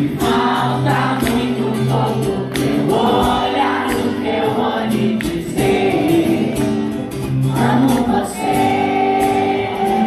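Live acoustic guitar and vocals playing a pop-rock song, with many voices from the crowd singing along.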